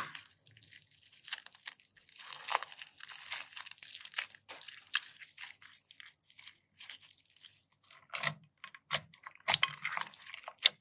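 Crinkly crunching as a clear plastic piping bag packed with small flat confetti pieces is squeezed in the hands: a dense run of short crackles. It opens with one sharp click, and softer, squishier pulses come in near the end as slime full of confetti is handled.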